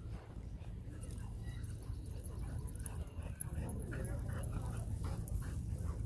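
A husky and a red short-coated dog play-wrestling, with dog vocalizations during the tussle; wavering calls stand out about halfway through.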